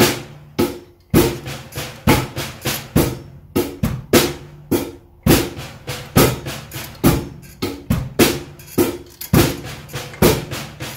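Drum kit playing a 4/4 groove on hi-hat, snare and bass drum for half the bar, then a fill of two flam accents in triplets. Each accent is struck as a flat flam on hi-hat, snare and bass drum together, followed by two taps on the snare, and the pattern repeats bar after bar.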